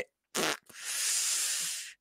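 A man's breath: a short puff, then a long hissing exhale through the lips lasting about a second, a wordless 'pfff' of resignation.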